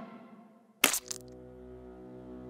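Cartoon sound effect: one sharp crack about a second in as an orange is squashed flat, with a couple of small clicks after it. It is followed by a low, sustained music chord that holds to the end.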